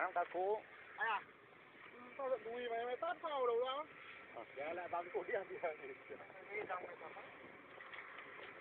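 People's voices talking and calling out, with no other sound standing out.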